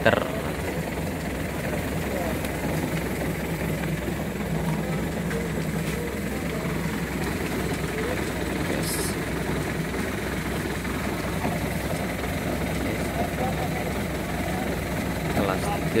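Small engine idling, a low steady drone without change in speed. A brief hiss about nine seconds in.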